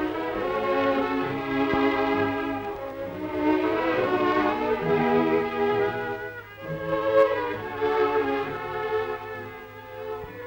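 Orchestral film score of brass and strings playing slow, long-held chords that swell and ebb in phrases, over a steady low hum.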